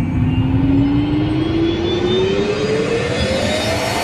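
Intro logo sound effect: a loud rising swell, one tone climbing steadily in pitch over a dense low noise.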